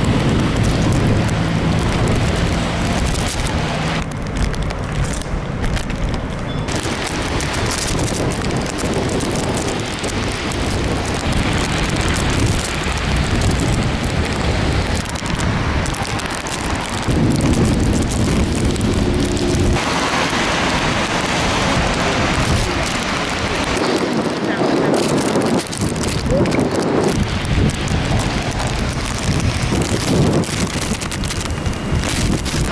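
Strong, gusty storm wind with rain on wet pavement, the wind buffeting the microphone. The sound changes abruptly every few seconds as the shots change.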